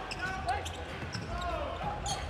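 A basketball being dribbled on a hardwood court, several sharp bounces, with sneakers squeaking on the floor.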